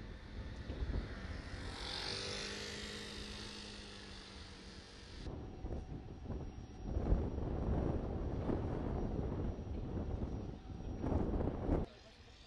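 A steady engine drone whose pitch sinks slightly over a few seconds. After an abrupt cut it gives way to wind buffeting the microphone in irregular gusts, which stop suddenly near the end.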